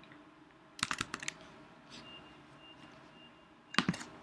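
Computer keyboard keys being pressed: a quick run of clicks about a second in and another couple of clicks near the end.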